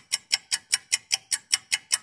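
Clock-like ticking sound effect: sharp, even ticks at a fast pace of about five a second.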